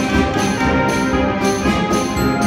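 High school concert band playing, brass and saxophones sounding full chords that change every half second or so.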